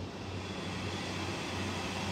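Room tone: a steady low hum and hiss with no distinct events.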